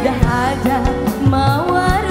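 Live dangdut band playing: sharp hand-drum strokes and keyboard under a female vocal line that slides between notes.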